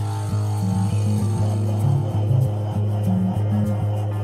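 Rock music with no singing: a bass riff of short low notes repeats over a sustained low note.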